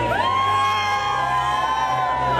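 A crowd of teenagers cheering and singing along together on a dance floor, many voices holding long shouted notes.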